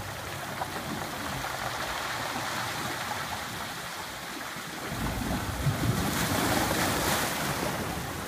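Ocean surf washing and foaming through a small rocky sea cave, a steady churning hiss that swells into a louder, deeper surge about five seconds in and then eases off.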